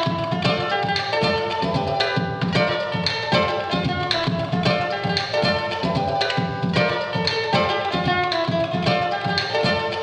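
Live-looped music: ukulele parts strummed and plucked in layers over a looped beatbox percussion track, with a steady repeating beat.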